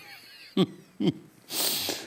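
A man breathing between sentences: two short voiced sounds, then a sharp, hissing breath in lasting about half a second near the end.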